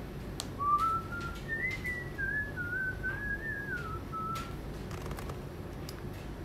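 A man whistling a short tune for about four seconds, a single clear tone stepping up and down, with a few faint clicks.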